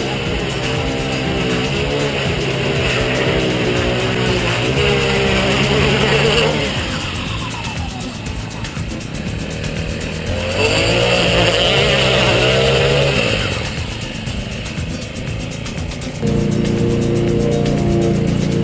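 Small engine of a Honda bladed lawn edger running as it cuts along a lawn edge, its speed rising and falling, with two quieter dips.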